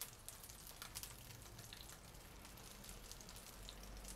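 Egg-battered pieces of dried fish frying in oil in a pan: a faint, steady sizzle with small crackles.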